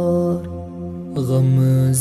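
Kashmiri naat sung by a male voice with a steady hummed drone underneath. A held note trails off about half a second in, and a new sustained note comes in a little after a second.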